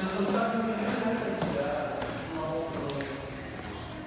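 Footfalls on wooden stairs, climbed two steps at a time, giving a few separate thuds about a second and a half apart, with a man's voice over them.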